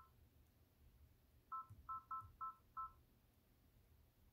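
Embroidery machine touchscreen beeping as its size-adjust arrow keys are pressed, one beep per press: a single short beep, then a run of five quick beeps about a second and a half in.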